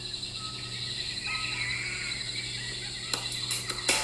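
Jungle ambience of insects and faint bird calls on a video's soundtrack, played through laptop speakers, with a few sharp clicks near the end.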